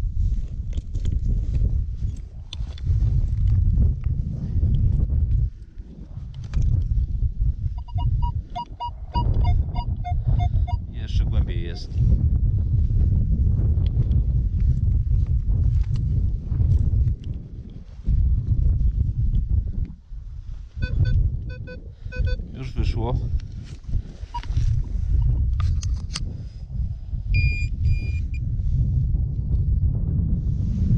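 A spade digging into dry field soil, with short strikes over a low rumble of wind on the microphone. A metal detector sounds short pulsing beep tones about a third of the way in and again about two-thirds of the way in, and gives a brief higher tone near the end.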